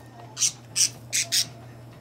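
Budgerigar giving four short, harsh squawks in quick succession, all within about a second.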